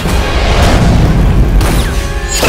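Trailer sound design: a loud, deep boom swelling under music, with a short whoosh near the end.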